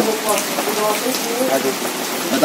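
Steady hiss of rain falling, with faint voices under it.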